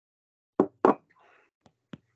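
Two sharp knocks about a quarter second apart, then a faint scratchy stroke and two light clicks: a stylus tapping and drawing on a tablet screen.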